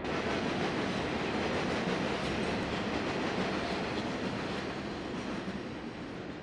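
Steady noise of a passing vehicle, easing off slightly toward the end.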